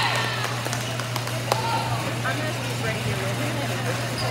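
Indoor gym ambience: overlapping chatter of players and spectators over a steady low hum, with a few sharp knocks of a volleyball being struck or bouncing.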